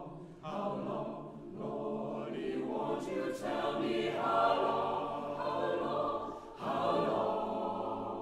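Mixed chamber choir singing in full harmony, the chords swelling louder toward the middle. After a brief break about six and a half seconds in, the choir re-enters loudly on a new phrase.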